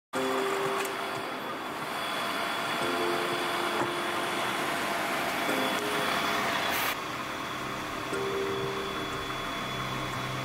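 Diesel engine of a DAF fire engine running steadily, with the sound changing about seven seconds in.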